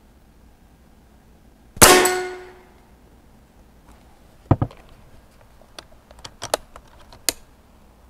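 A single shot from a Benjamin Bulldog .357 big-bore PCP air rifle about two seconds in, and the steel gong target ringing at the hit, the ring dying away over about a second. Two knocks follow a couple of seconds later, then several light clicks.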